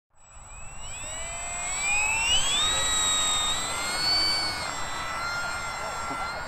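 Electric brushless motor and propeller of a Freewing Fw190 foam RC warbird whining as it is throttled up for take-off, rising steeply in pitch over the first couple of seconds, then holding a steady high whine as the model flies.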